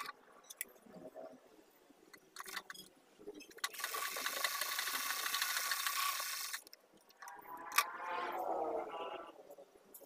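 Electric sewing machine stitching a seam: one steady run of about three seconds, then a shorter, uneven run with its pitch sliding up and down, and a sharp click between them.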